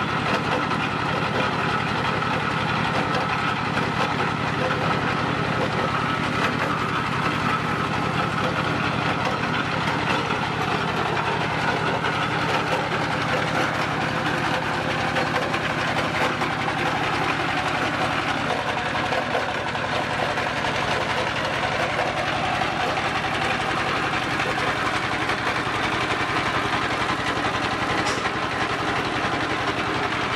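Diesel engine running steadily, belt-driving a mustard oil expeller press as mustard seed is fed in: a constant, even machinery din.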